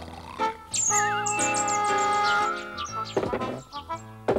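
Cartoon background music with a run of short, high chirping whistles over sustained notes. Near the end comes a short rasp of a hand saw cutting wood.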